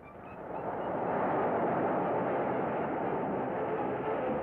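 A cartoon sound effect of a huge sea wave rushing in: a rushing noise that swells over the first second and then holds steady.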